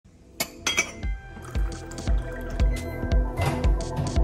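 Background music with a steady beat of about two a second that starts about a second in, over a couple of sharp glassy clinks near the start.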